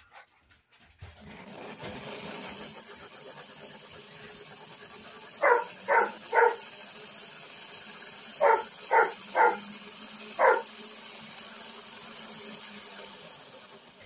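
1950s Lionel locomotive's electric motor and gears running steadily on transformer power, its wheels spinning while the chassis is held on the track; the motor has just been cleaned, oiled and greased and runs well. The whir starts about a second in and fades near the end. Dogs bark seven times over it: three quick barks about halfway, then four more a few seconds later.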